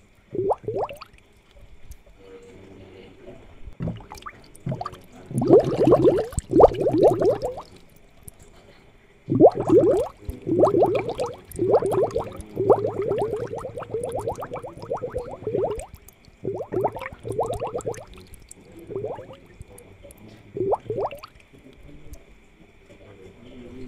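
Air bubbles gurgling and popping in a freshwater aquarium, in irregular bursts of rapid bubbling that are densest in the middle, over a faint steady high tone.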